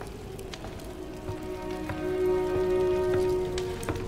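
Film score with soft sustained chords that swell in about a second in and hold steady, over a light crackling and scattered small clicks in the background.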